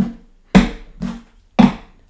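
Wooden toy train track pieces set down on a tabletop: four sharp wooden knocks with a short ring, the loudest about half a second in and near the end.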